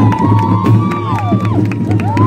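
Marching band music with drums, under a cheering crowd whose long whoops rise and fall in pitch.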